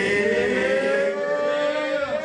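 One long held note, rich in overtones, rising slowly in pitch and breaking off at the end.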